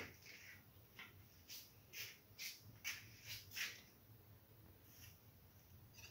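Faint, scattered crackles and ticks of a small amount of cooking oil heating in a pan, about eight light pops, most of them between one and four seconds in, over near-silent room tone.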